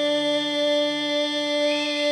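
Male vocalist of a Carnatic progressive rock band holding one long, steady sung note. A faint wavering higher melody line comes in near the end.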